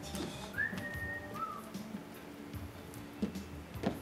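A person whistling twice: a rising whistle held for about half a second, then a shorter, lower one. A quiet music bed plays underneath.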